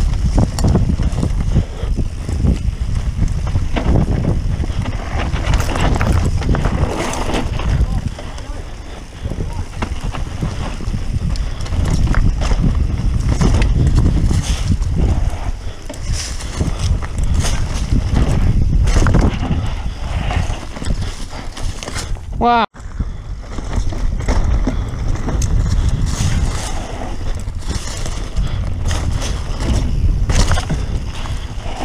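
Mountain bike riding fast down a loose dirt trail, heard through an action camera's microphone. Wind buffets the microphone, the tyres run over dirt and the bike rattles and knocks over bumps. About two-thirds of the way through, the sound cuts out briefly with a short rising tone.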